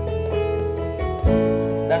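Acoustic guitar accompanying a singer who holds a long note at the end of a sung line in Indonesian, moving to a new note a little over a second in; the next line begins right at the end.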